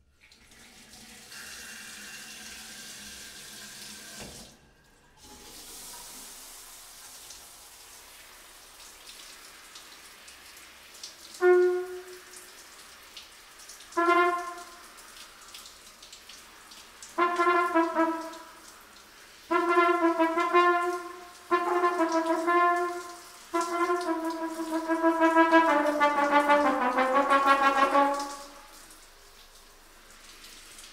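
Water running in a bathtub after the tap is turned on, cutting out briefly about four seconds in and then running on. From about eleven seconds in a trumpet plays over it, first a few short separate notes, then longer phrases that grow louder before stopping near the end.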